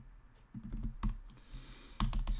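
Typing on a computer keyboard: a quick run of keystrokes starts about half a second in, with one key struck harder about a second in.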